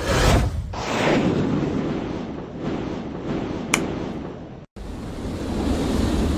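Special-effect missile sound: a rushing roar that keeps up through the whole stretch, with a single sharp tick midway, a sudden dropout about three-quarters of the way through, then the roar swelling again as the missile comes in.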